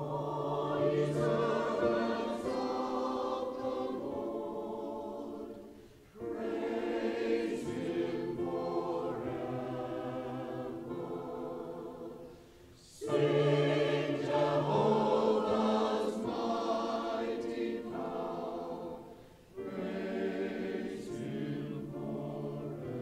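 A mixed choir of women's and men's voices singing in four phrases, each ended by a brief pause.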